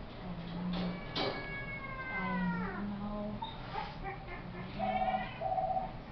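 Domestic cat yowling in protest at being put into a kennel cage: one long, drawn-out yowl that falls in pitch, starting about a second in, and a shorter meow near the end. A couple of sharp clicks come just before the long yowl.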